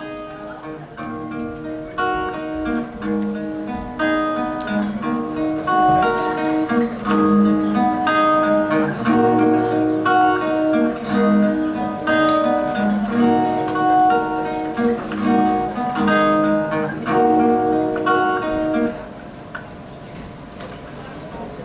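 Amplified acoustic-electric guitar playing a picked, repeating figure layered on a loop pedal, building up over the first few seconds and cutting off about a second before the end. The loop is way too loud.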